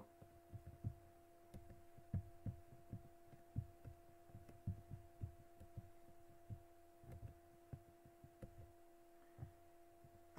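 Faint steady electrical hum, with soft low thumps scattered irregularly about once or twice a second.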